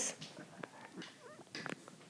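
A few faint soft taps and light scrapes of a stylus writing on an iPad's glass screen.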